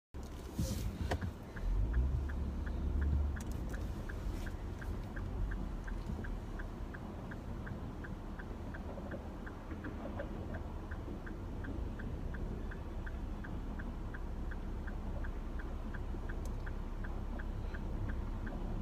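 Car turn-signal indicator ticking steadily, about three clicks a second, over a low engine and road rumble inside the cabin.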